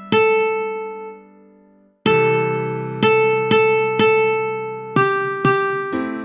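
Ukulele melody played note by note from the tab: seven single plucked notes, each ringing out and fading, with a pause of about a second shortly after the first one.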